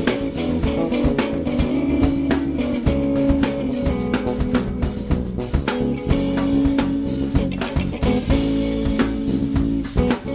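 Live instrumental trio music: guitar over bass and drum kit, playing steadily with many drum hits.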